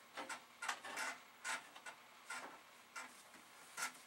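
Irregular light clicks, knocks and rustles of hands rummaging through small parts and objects on a shelf, about eight short sharp sounds spaced unevenly.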